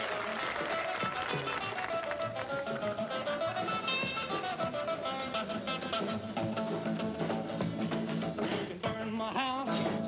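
Live 1950s rockabilly band playing an instrumental break: electric guitar lead over upright bass and drums, with no singing.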